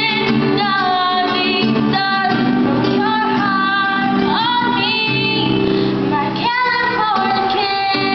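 Two girls singing a pop ballad together, accompanied by an acoustic guitar.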